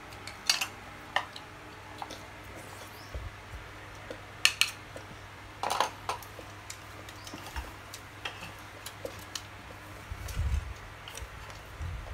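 Chopsticks and spoons clicking against plastic bowls and a metal hotpot while eating: scattered short clicks, the loudest about half a second, four and a half and six seconds in, over a low steady hum.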